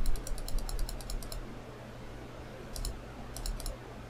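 Rapid clicking of computer input controls stepping a software tilt-adjustment value, about ten clicks a second, in two runs: one at the start lasting over a second, and a shorter one near the end.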